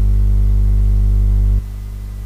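Steady low electrical mains hum with a stack of overtones, loud at first and dropping back to a quieter hum about a second and a half in.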